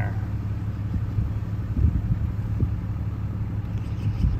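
Steady low rumble of engine and road noise from inside a moving vehicle.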